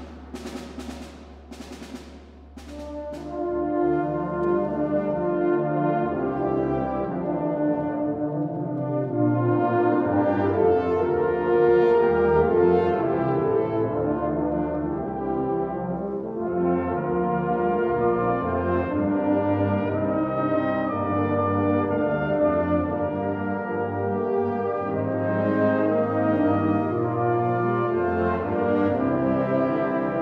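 Wind band playing: a few drum strokes in the opening seconds, then the band comes in with full, sustained brass-led chords that swell and hold.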